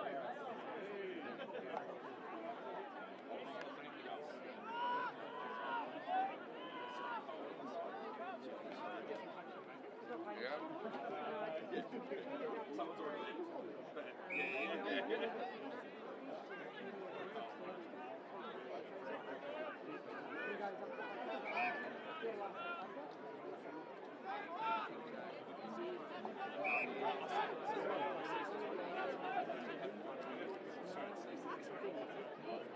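Indistinct chatter and calls from spectators and players on the ground: a steady babble of voices with a few louder shouts now and then.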